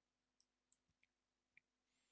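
Near silence with a few faint, unevenly spaced computer mouse clicks.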